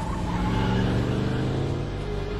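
Car engine running with a steady pitch, growing louder about half a second in.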